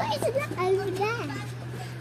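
A small child's high voice in short, unclear phrases, over a steady low hum.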